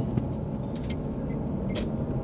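Steady road and engine noise inside a moving car's cabin, a low even rumble, with a few faint clicks.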